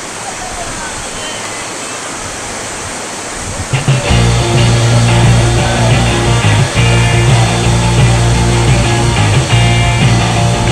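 Rushing whitewater rapids for the first few seconds. About four seconds in, loud background music with a heavy bass line comes in and takes over.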